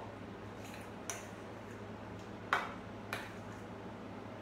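A mixing utensil knocking and clinking against a bowl of turmeric paste a few times, with the sharpest knock about two and a half seconds in, over a steady low hum.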